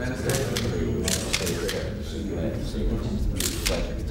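Press photographers' camera shutters clicking several times, two in quick succession near the end, over a low murmur of voices in the room.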